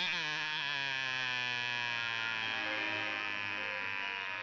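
A man holds a long, steady 'aaah' with his mouth open and a tongue depressor on his tongue, as in a doctor's throat examination. The pitch dips briefly at the start, then stays level.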